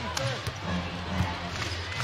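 A basketball being dribbled on a hardwood court, a few separate bounces, over a steady low arena background.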